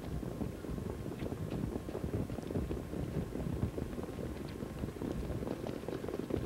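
Harness racing track sound as the pacers come up behind the mobile starting gate: a steady, low rumble of hoofbeats, sulky wheels and the gate car's engine, with wind on the microphone.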